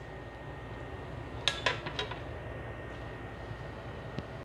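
Metal utensils clinking against a steel cooking pan: a short cluster of sharp clinks about a second and a half in and a lighter one near two seconds, over a steady low hiss.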